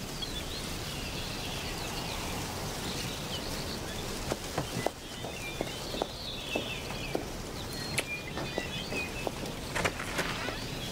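Birds chirping over a steady outdoor background hiss, with a series of light taps and clinks from about four seconds in.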